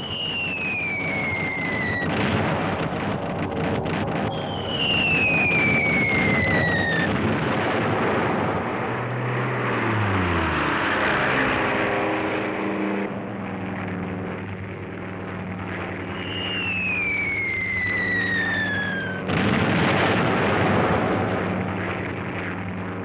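Three falling whistles of dropping bombs, each a couple of seconds long and ending in the rumble of an explosion, the last cut off by a sudden loud blast. Underneath runs a continuous rumble with a steady droning aircraft engine note, and a deeper engine note slides down in pitch about ten seconds in as a plane passes.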